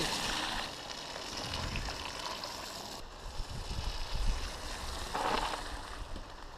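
Shallow stream water running and lapping around a camera set at water level, with low rumble on the microphone. The water noise is louder in the first moment and then eases, and there is a short louder burst a little after five seconds in.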